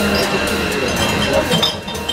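Café bar sounds: cups, glasses and crockery clinking again and again at the counter, over indistinct voices.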